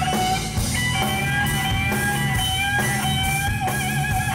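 Live blues-rock band: electric guitar lead holding one long sustained note that wavers with vibrato near the end, over bass guitar and drums.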